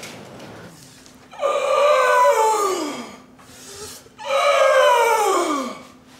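A person's voice wailing twice in long cries, each sliding down in pitch; the first begins about a second and a half in, the second about four seconds in.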